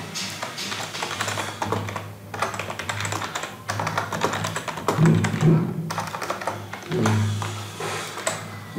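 Typing on a computer keyboard: quick, irregular keystroke clicks, with background music underneath.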